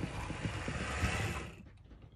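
HO-scale Rivarossi Genoa 4-4-0 model steam locomotive running forward on the track: steady whirring of the tender motor and worm-gear drive with wheel noise on the rails, running smoothly in this direction despite its worn gears. The sound fades and drops away about one and a half seconds in as it slows to a stop.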